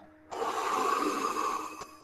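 A woman blowing out one long puff of breath, acting the big bad wolf's puff: about a second and a half of rushing air that starts just after the beginning and stops shortly before the end.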